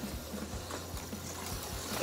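An HO-scale slot car's small electric motor running steadily round the track.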